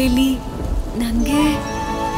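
Rain falling with a low rumble of thunder, under soft background music: a held note with a slow gliding melody.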